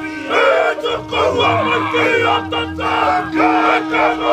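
Māori warriors performing a haka: men's voices chanting and shouting together in loud, short phrases.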